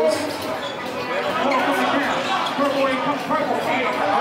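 Spectators chattering and calling out, many voices overlapping, with a basketball bouncing on the court beneath them.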